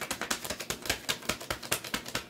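A tarot deck being shuffled by hand: a rapid, even run of crisp card clicks.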